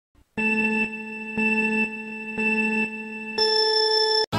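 Countdown sound effect: three low electronic beeps about a second apart, then a longer beep an octave higher for "go", which cuts off suddenly.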